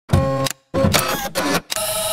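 Electronic intro sounds: a run of short, buzzy bursts with steady tones in them, the first about half a second long and the next two longer, each starting and stopping sharply.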